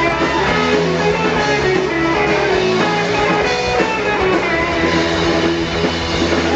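A live pop-punk rock band playing: electric guitars and a drum kit at a steady, loud level.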